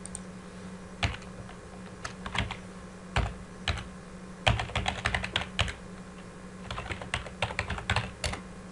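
Computer keyboard being typed on in irregular bursts of keystrokes, sparse at first and quicker in the second half, over a steady low hum.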